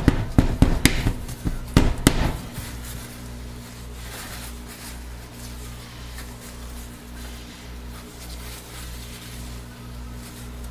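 A loaded plastic soap mold is banged down several times on a glass-ceramic stovetop, a quick run of sharp knocks in the first two seconds or so, to settle soap batter that has accelerated and thickened too fast to pour. A steady low hum follows.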